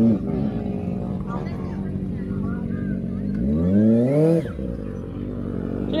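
Kawasaki ZX-6R inline-four motorcycle engine idling steadily, with a single throttle blip about three and a half seconds in: the pitch rises and falls back within about a second.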